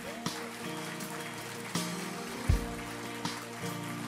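Soft background music of held, sustained chords, with water lapping in a baptism tank and a few soft knocks, the loudest about two and a half seconds in.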